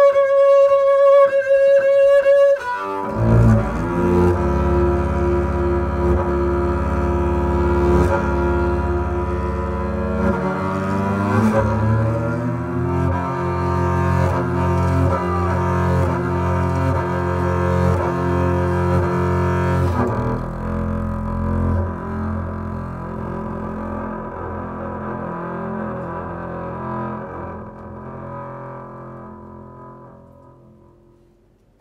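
Solo double bass played with the bow: a high held note, then about three seconds in a drop to deep, long-held low notes with rich overtones. The notes slide in pitch briefly midway and the playing fades gradually away toward the end.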